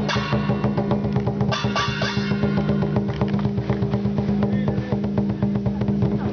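Lion dance percussion: a drum beaten in a fast, dense beat with cymbal crashes over it, under a steady low ringing tone.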